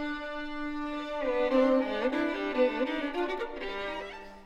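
Solo violin played with the bow: a long held note, then a run of shifting notes in the middle, dying away near the end.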